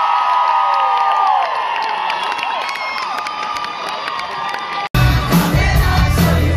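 A concert crowd cheering and screaming, with many high, held screams. About five seconds in, the sound cuts off abruptly and a live rock band comes in loud, with drums and heavy bass.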